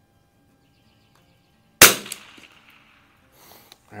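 A single sighting shot from an Anschutz 64 MP bolt-action .22 rimfire rifle about two seconds in: one sharp crack with a short ringing tail.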